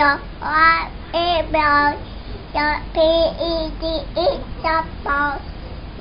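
A toddler singing in a high voice, a string of short held syllables without clear words.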